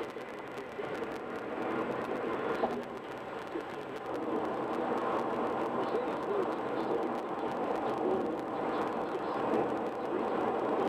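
Steady tyre and road noise of a car cruising on a concrete expressway, heard from inside the car, a little louder from about four seconds in.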